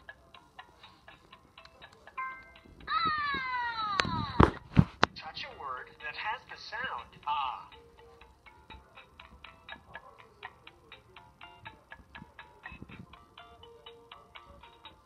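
Electronic game sounds from a LeapFrog Tag reading pen's small speaker: a short beep, a falling cartoon glide followed by two knocks, a brief burst of character voice, then a ticking music loop at about four ticks a second.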